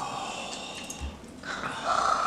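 A man breathing hard through pursed lips around a Carolina Reaper lollipop, two long hissing breaths in a row, a sign of a burning mouth from the pepper heat.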